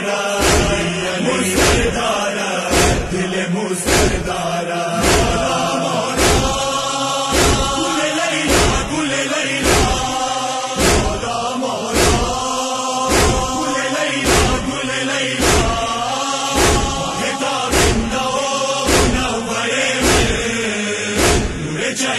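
A group of men chanting a noha lament in unison, with rhythmic chest-beating (matam): hand strikes on the chest keep an even beat of about one loud strike a second under the voices.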